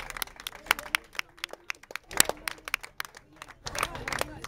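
Sparse applause from a small crowd: irregular individual hand claps, with some faint talking.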